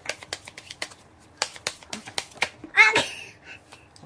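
A brand-new deck of Bicycle playing cards being overhand-shuffled by hand: a quick run of light card clicks and slaps, with a short pause about a second in. A brief burst of a person's voice comes near the three-second mark.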